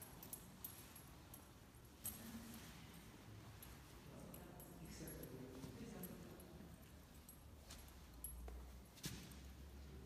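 Near silence in a room, with faint handling sounds as a man pulls on trousers and shoes, and two soft knocks, one about two seconds in and one near the end.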